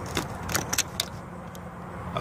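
Plastic wiring connector being unlatched and pulled off a throttle position sensor: a few small clicks and rattles in the first second, then quieter.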